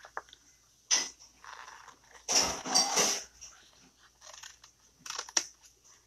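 Scissors snipping through a plastic silkscreen transfer sheet, with the sheets rustling. A few separate crackly bursts, the longest near the middle.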